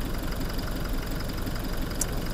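Toyota Hilux's 2GD four-cylinder turbodiesel idling steadily, with a low, even diesel clatter.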